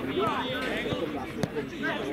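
Several people's voices calling and talking over one another on a football pitch during play, with one sharp thud about one and a half seconds in.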